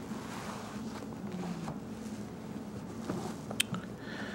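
Steady room tone and hiss from a stage microphone, with a couple of faint clicks near the end.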